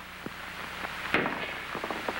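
Pool balls clicking during a shot: a sharp knock about a second in, then a few lighter clicks, over a low steady hum.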